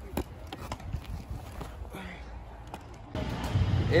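Scattered sharp claps and slaps with a faint voice. A little after three seconds the sound changes abruptly to a low steady hum, and a man starts speaking.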